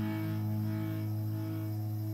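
1998 Squier Stratocaster electric guitar played through an amplifier, a low note held and ringing steadily.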